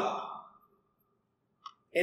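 A man's speech trails off, followed by a silent pause broken by one brief click shortly before he speaks again.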